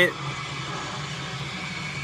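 Steady low hum and hiss of background noise with no distinct events.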